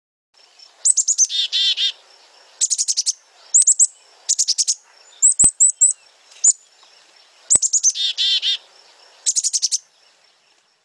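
Recorded chickadee chick-a-dee-dee-dee alarm call: quick high notes followed by a run of lower, buzzy dee notes, given twice, with several shorter series of high notes in between. A few faint clicks sit in the middle.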